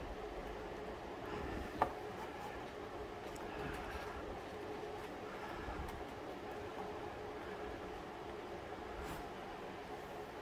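Cardboard model parts being pushed and folded into place by hand, mostly faint rustling with one sharp click about two seconds in, over a faint steady hum.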